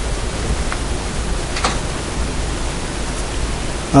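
Steady hiss of background noise, even and without pitch, with a faint brief tick about one and a half seconds in.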